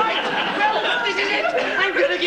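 Voices talking without clear words, like chatter or muttering.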